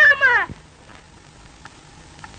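A person's high wailing cry, held on short notes and then sliding down in pitch and breaking off about half a second in; after it only the faint hiss of an old film soundtrack.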